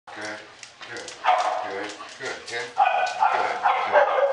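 Dogs barking repeatedly in a narrow hard-walled hallway, several short barks a second.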